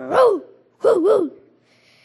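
A man's voice imitating a big dog barking: one bark, then two more in quick succession, each rising and falling in pitch.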